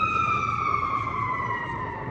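A siren holding one tone that slowly falls in pitch.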